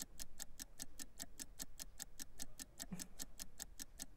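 Countdown-clock ticking sound effect: fast, steady, even ticks, about eight a second, marking the seconds running down on a timed deal.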